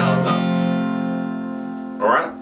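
Acoustic guitar: one strummed chord, struck at the start and left to ring out, fading gradually.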